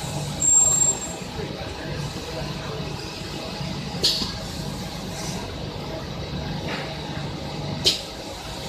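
Pneumatic cylinders and air lines on a high-frequency welding machine venting compressed air: a loud hiss with a thin high whistle about half a second in, then short sharp air bursts around four seconds in and just before the end, over a steady low machine hum.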